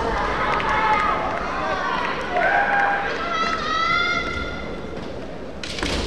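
Kendo fighters' kiai: loud, drawn-out shouts that rise and fall in pitch, overlapping voices during the first four seconds or so, then a sharp crack near the end.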